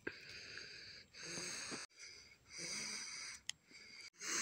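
A person breathing heavily and wheezily close to the phone's microphone, a breath about every second and a half. There is a sharp click about three and a half seconds in.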